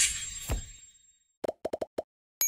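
Animated-logo sound effects: a high airy swoosh that fades over the first second, a low plop dropping in pitch about half a second in, then a quick run of short pops near the end.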